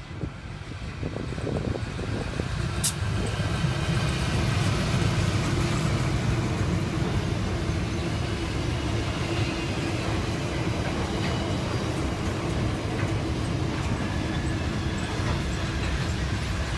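Two NR class diesel-electric locomotives (GE Cv40-9i, V16 7FDL engines) running past, growing louder over the first few seconds, then a long freight train of steel and container wagons rolling steadily by. A single sharp click comes about three seconds in.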